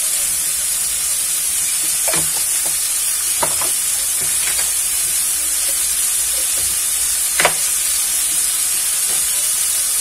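Shrimp and pork pieces frying in a pan: a steady sizzle broken by a few sharp pops, the loudest about seven and a half seconds in.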